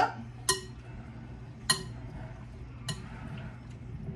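A utensil stirring a bowl of diced fruit in orange juice, knocking against the bowl in three sharp clinks about a second apart, with soft stirring between them.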